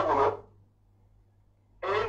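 A person's voice stops about half a second in, followed by more than a second of near silence; voiced sound starts again near the end.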